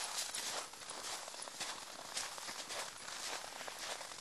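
Footsteps crunching in fresh snow at a walking pace, a string of irregular soft crunches.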